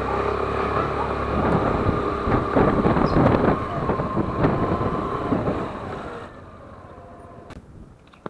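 Motorcycle engine running as it is ridden along a street, with wind noise on the microphone; the sound drops away sharply about six seconds in as the bike comes to a stop.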